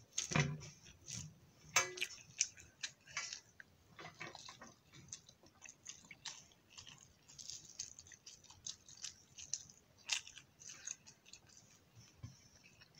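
Fingers mixing and squishing rice on a metal plate, with many small irregular clicks and squelches as fingertips and nails press the sticky rice against the steel. A couple of louder clicks come early.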